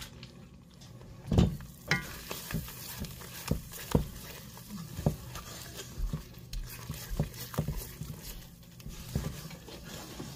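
A wooden spoon stirring and scraping thick Alfredo sauce around a metal skillet. It starts about a second in, with a run of irregular soft knocks as the spoon hits the pan.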